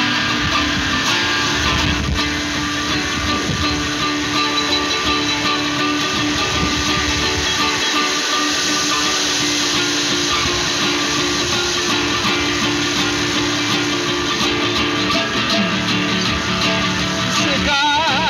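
Classical nylon-string guitar playing an instrumental passage between sung verses, with long held tones sounding under it.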